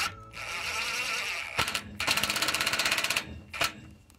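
Cordless 18V impact driver running a socket on a solar-panel clamp bolt: a steady whir for over a second, then a run of rapid, even hammering as the bolt snugs down, and a couple of short bursts near the end.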